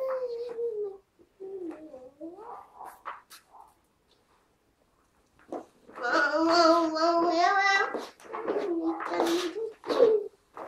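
A young child's high voice singing and vocalising in drawn-out, gliding notes, with a pause of about two seconds in the middle. The loudest stretch, about six seconds in, climbs in small pitch steps and ends on a long held note.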